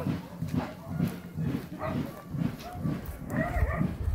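Horses walking on a stone-paved road, their hooves thudding in a steady, even rhythm, with brief bits of a man's voice in the background.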